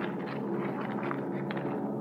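Steady low drone of an airliner's engines, a radio-drama sound effect for the passenger cabin in flight.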